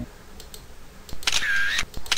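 Two camera-shutter sound effects, each about half a second long: the first a little over a second in, the second starting right at the end.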